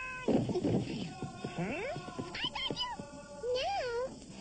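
Cartoon character voices making short, wordless, meow-like cries that slide up and down in pitch, with a wavering cry near the end.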